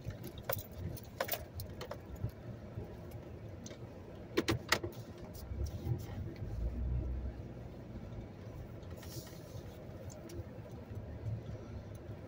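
Vehicle cabin noise while driving: a steady low road and engine rumble with scattered sharp clicks and rattles, the loudest pair about four and a half seconds in. A deeper rumble swells around six to seven seconds in.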